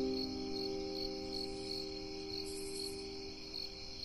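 Crickets chirping in a steady high trill with regular pulses, under the fading tail of a soft piano chord.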